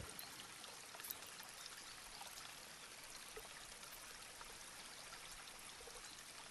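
Near silence: a faint steady hiss of room tone, with one faint click about a second in.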